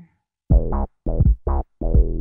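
Electronic snare sample, heavily processed, played back as a rhythmic run of short pitched hits with a deep low end, starting about half a second in.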